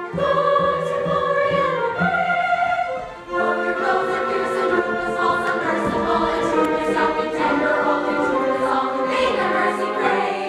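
Chorus singing an operetta number with a live pit orchestra of strings and woodwinds. Held notes change about once a second, there is a short break about three seconds in, and then the chorus and orchestra come back fuller.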